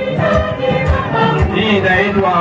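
A choir singing a lively church song, with a steady beat in the accompaniment.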